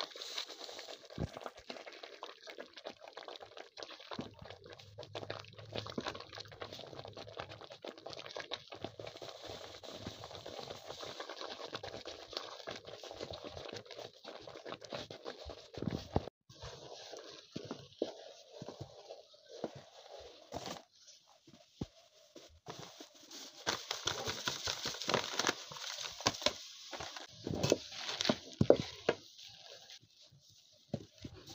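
Wooden cooking stick stirring and mashing a thick white flour porridge in an aluminium pot, giving irregular scraping, squelching and knocking against the pot as the mass stiffens. The strokes get busier and louder in the last several seconds.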